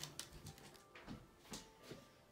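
Near silence: quiet room tone with a few faint, short taps and rustles.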